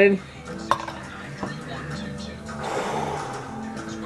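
Two light knocks as the plastic dip cup and spoon are handled and set down on the table, then a short crunchy bite into an apple about two and a half seconds in, over faint steady background music.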